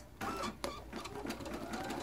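Baby Lock Flourish embroidery machine stitching a name, its needle running in a quick, even patter of stitches.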